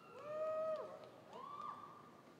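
Two faint, high-pitched whoops from a person in the audience, each rising and then falling in pitch, the second higher than the first: cheering for a graduate as the name is called.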